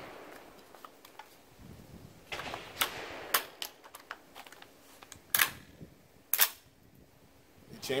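Windham Weaponry MPC AR-15 rifle fitted with a CMMG .22 LR conversion kit being loaded. A few light clicks as the magazine is seated, then two sharp metallic clacks about a second apart: the charging handle is pulled back and let go, chambering a round.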